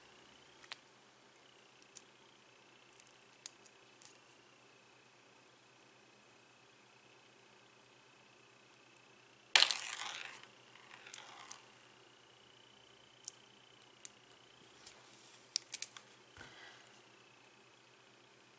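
Small metal clicks and handling of a flathead screwdriver unscrewing a threaded coil terminal screw on a Freemax Scylla RTA deck. It is mostly quiet, with one louder clatter about halfway through and a quick cluster of ticks near the end, over a faint steady high whine.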